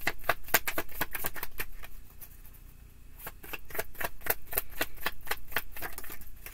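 A deck of tarot cards shuffled overhand, a quick run of card slaps at about five or six a second that stops for about a second some two seconds in, then picks up again.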